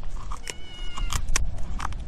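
A kitten meowing once, about half a second in, with a few sharp snips of scissors cutting through lionfish fin spines.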